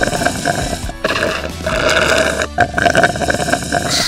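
Slurping sound effect of drinking through a straw, in four or five long pulls with short breaks, over background music.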